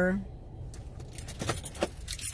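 Light metallic jingling and clicking, like keys, starting about half a second in, over the low steady rumble of a car interior.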